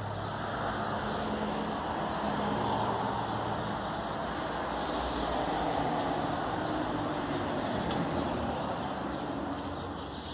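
Road traffic passing outside, heard as a steady rushing noise that swells twice, as if two vehicles go by, and eases off near the end.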